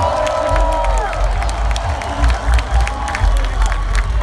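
Large crowd cheering while a brass horn section answers its introduction with a held chord that slides down together about a second in, over a deep bass pulse.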